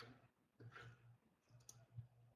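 Near silence, with a few faint, brief clicks.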